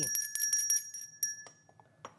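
Small hand bell rung with several quick strikes in the first second, its ringing then dying away.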